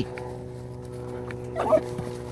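Belgian Malinois dogs wrestling in play, one giving a short wavering cry about one and a half seconds in, over a steady low hum.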